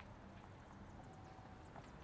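Near silence: faint background room tone during a pause in a phone-call voice roleplay.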